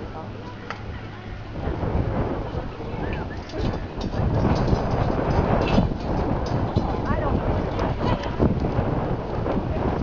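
Wind buffeting the camcorder microphone in a low rumble that grows louder a couple of seconds in, with faint voices underneath.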